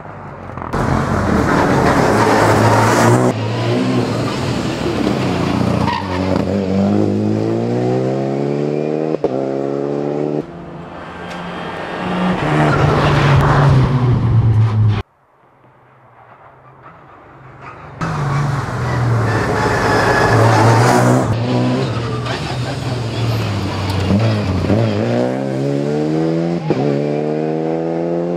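Two rally cars running a special stage one after the other, engines revving hard with the pitch falling and climbing through braking and gear changes as each one passes. The first cuts off abruptly about fifteen seconds in, and the second builds up from a distance a few seconds later.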